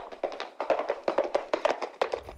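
A quick, uneven clatter of sharp taps that builds steadily in loudness.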